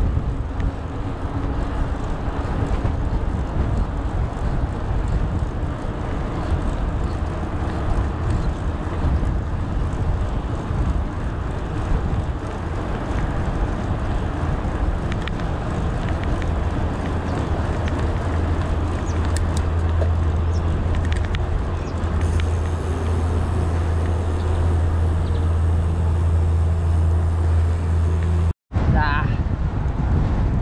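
Wind on an action camera's microphone and the rolling rumble of mountain-bike tyres on an asphalt path, with a steady low hum joining about halfway through. The sound cuts out for an instant near the end.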